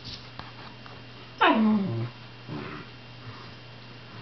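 A sleeping dog gives one loud whining yelp that slides steeply down in pitch, about a second and a half in, then a softer, shorter whimper about a second later.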